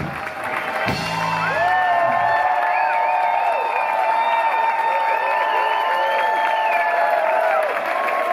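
A live band ends a song. The drums and bass stop about a second and a half in, leaving long held notes with gliding, wavering melody lines over them, while the audience cheers and claps.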